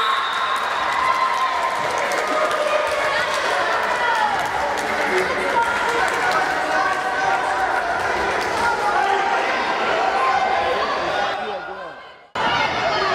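Many overlapping children's voices shouting and calling in an echoing sports hall, with occasional thuds of a ball on the wooden floor; the sound fades out near the end.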